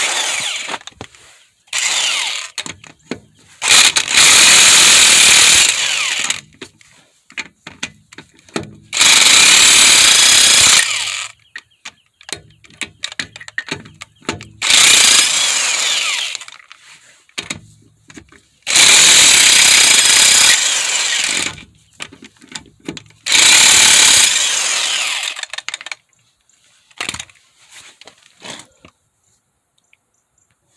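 Impact wrench hammering loose a car's lug nuts, which were sprayed with penetrating oil because they can be hard to come off. It comes as about seven loud bursts, each one to three seconds long, with short pauses between them.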